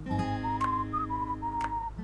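Background music: a whistled melody moving in small steps over sustained acoustic guitar chords, with a light tick about once a second.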